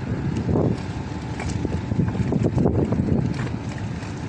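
Wind buffeting the microphone: a low, uneven rumble that swells and dips.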